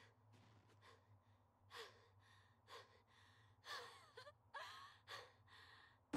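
Near silence: room tone with a low hum and a few faint, brief sounds.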